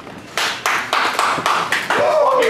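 Hand clapping close by: a run of loud, sharp claps, about three to four a second, starting a third of a second in.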